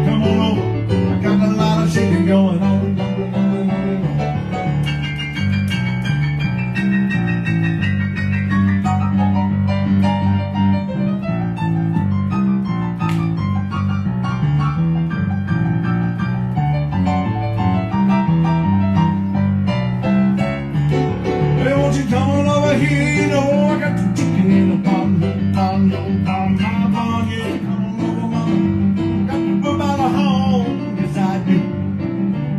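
Digital stage piano playing a rock-and-roll piano break, with a steady, driving repeated bass figure in the left hand under pounded right-hand chords and runs.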